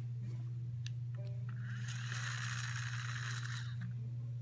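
Wind-up toy truck's spring motor whirring for about two seconds, starting about one and a half seconds in, over a steady low hum.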